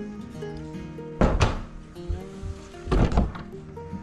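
Background music playing steadily, with two loud thumps about a second apart from the middle, one just over a second in and one about three seconds in, from a wooden door being handled and knocked as it is passed through.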